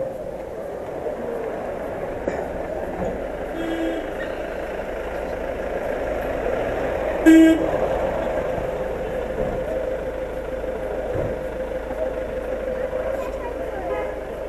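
Street traffic hum with two short vehicle horn toots, one about four seconds in and a louder one about seven seconds in.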